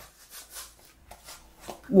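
Faint rustling of clothing being handled, with a few soft ticks among it.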